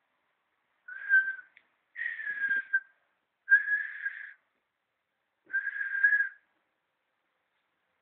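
Four short whistled notes, each a single steady pitch lasting under a second, spread over about five seconds; the second note slides down a little.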